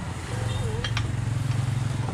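A steady low hum with two light metal clicks about a second in, as a wrench gives the final tightening to the clutch shoe assembly on a small two-stroke engine.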